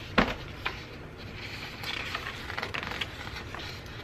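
Fingers handling and rubbing planner paper pages: a sharp tap just after the start, then soft paper rustling with small ticks through the middle.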